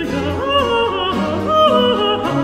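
Countertenor singing with vibrato over a baroque orchestra, the voice moving from one held note to the next in a florid line.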